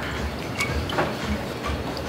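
A few light clicks and knocks of a glass whisky bottle and barware being handled, two of them about half a second and a second in, over a low room rumble.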